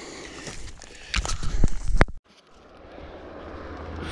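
Footsteps and rustling through dense mountain scrub, with knocks and rumbles of handling on the microphone about a second in. After a brief break, a vehicle on the mountain-pass road, growing steadily louder.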